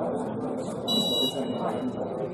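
Referee's whistle, one short blast about a second in, signalling the free kick to be taken, over players' and spectators' voices.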